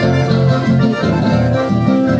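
Chamamé played on accordion: held chords over a steady, rhythmic bass line.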